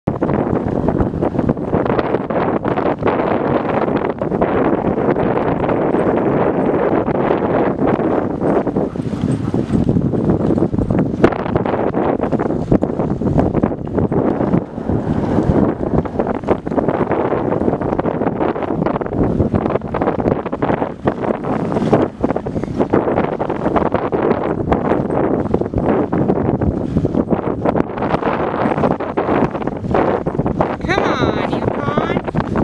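A dog sled running over packed snow behind a team of huskies: a continuous scraping rush from the runners with frequent knocks and jolts. Wind buffets the microphone throughout.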